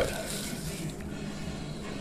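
A serving utensil scooping a piece of baked spaghetti casserole out of its dish: soft, quiet scraping with a faint tap about halfway through.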